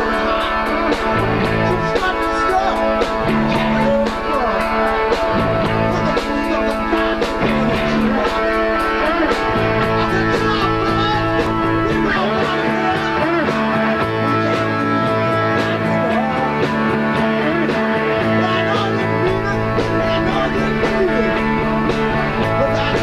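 Live rock band playing: electric guitar, bass guitar and drums, with bass notes changing every second or so under a steady beat.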